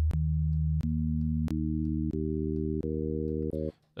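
A Serum software-synth note held on a low sine wave while harmonics are added to the wavetable one bin at a time: a click and a new overtone about every 0.7 s, six in all, each stacking onto the tone so that it builds toward a chord. The note stops shortly before the end.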